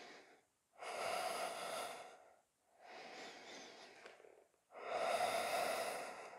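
A man's deep, controlled breaths, audible in and out: three long breaths of about two seconds each, the first and last louder than the middle one.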